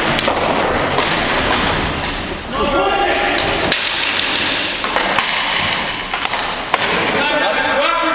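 Ball hockey play on a gym's hardwood floor: sticks and ball knocking sharply now and then over a constant background din, with players' voices calling out twice, all echoing in the hall.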